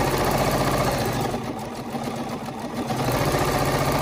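Bernina 505 QE sewing machine with its BSR stitch-regulator foot stitching fast during free-motion quilting, the needle going in a rapid even rhythm over a steady motor hum. It eases off a little in the middle and picks up again near the end.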